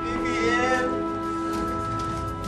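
Background drama music of sustained held notes, with a person's wavering, crying wail over it during the first second.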